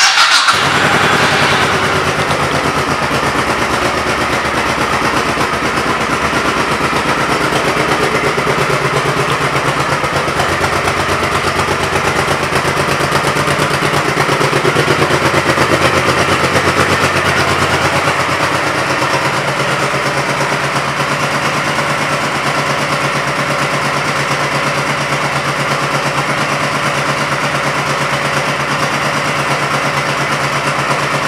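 A 2007 Honda Shadow Spirit's V-twin engine starts and settles into a steady idle with an even, rapid pulse. About halfway through it runs a little faster and louder for a few seconds, then drops back to idle.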